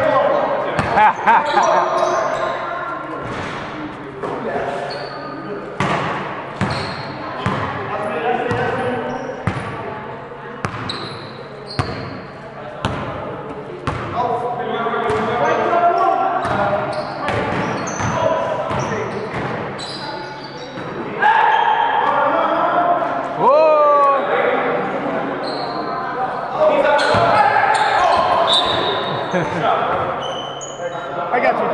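Basketballs bouncing on an indoor gym floor during play, with short high squeaks and players' indistinct voices, all echoing in a large hall.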